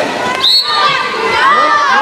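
Spectators and young players shouting and cheering at a youth water polo game: many overlapping voices at once, with a brief shrill high note about half a second in.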